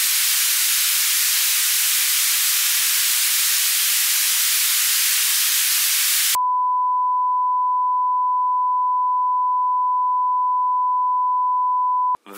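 Television static: a loud, even hiss of analogue TV snow that cuts off suddenly about six seconds in. It is replaced by a steady, high-pitched broadcast test tone, one unbroken beep held for the last six seconds.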